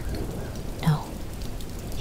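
Steady rain ambience, an even hiss of falling rain, with one short voiced sound about a second in.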